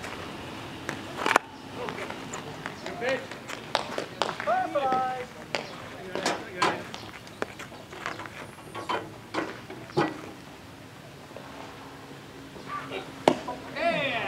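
Players' shouted calls and chatter across a baseball field, with scattered sharp knocks and claps, the sharpest a little over a second in and again near the end.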